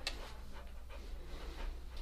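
A dog panting softly with its mouth open.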